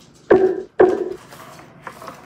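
Paper towel rubbing across the phone close to its microphone: two loud wiping strokes about half a second apart, each fading quickly.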